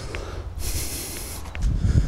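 A person's heavy breath while walking uphill: one hissing exhale lasting nearly a second, over a low rumble.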